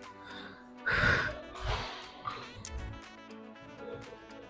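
Background music, with two loud, forceful breaths from a woman about a second in and shortly after, effort exhalations as she drives a loaded hip-thrust machine up.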